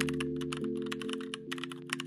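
Rapid keyboard typing clicks over background music, a held chord that slowly fades.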